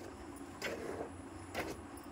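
Cow being milked by hand: squirts of milk hitting the milk already in a steel pail, two short hissing squirts about a second apart.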